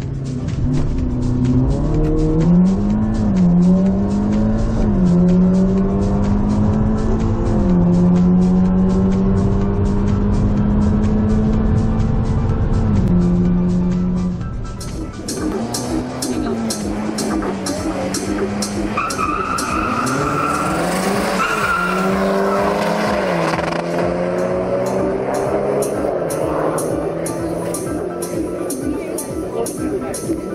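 Audi S3's turbocharged four-cylinder engine accelerating hard, heard from inside the cabin: the revs climb and drop twice in the first few seconds as it shifts gear, then the engine note holds steady. About halfway the level dips and the engine sound is less clear, with background music with a beat playing throughout.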